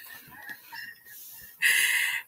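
A woman's short, breathy, high-pitched laugh near the end, after a second or so of faint sounds.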